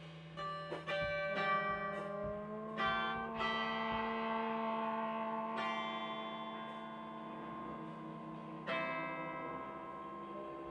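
A live band playing slow instrumental music: a held low drone under ringing notes that start sharply and fade away slowly. A cluster of these notes comes in the first few seconds, one more comes midway and another near the end.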